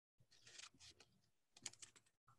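Near silence with a few faint clicks and rustles of paper cut-outs being handled, a short cluster of clicks near the end.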